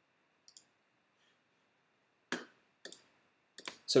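A few short, separate clicks at irregular intervals against a near-silent background, the strongest in the second half.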